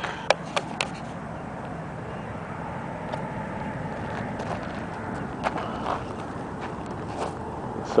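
Steady outdoor background noise with a few sharp clicks in the first second and a couple of fainter ticks later on.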